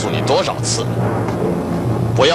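A man's voice speaking a brief line of dubbed Mandarin dialogue, over a steady low hum.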